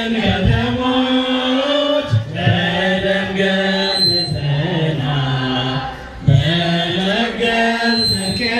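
Ethiopian Orthodox hymn chanted by a group of voices, in long held notes that step between pitches. There are short breaks between phrases about two seconds in and again about six seconds in.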